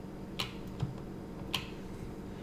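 Three short clicks from a computer mouse as code is highlighted and the page scrolled, over a steady low hum.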